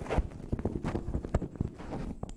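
Microphone handling noise: irregular low knocks and rustling as the microphone is passed from one presenter to the next.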